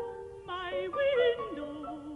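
A contralto voice singing a classical art-song phrase with wide vibrato, stepping down to a lower held note near the end, over sparse, separately struck piano notes.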